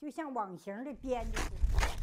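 A woman's voice for about a second. Then a pole is jabbed into broken ice in an ice hole, making two short, sharp sounds about half a second apart over a low rumble.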